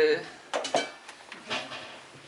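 A few short metal clinks and knocks, about half a second, three quarters of a second and a second and a half in, as an electric hand mixer with wire beaters is handled over a stainless-steel sink.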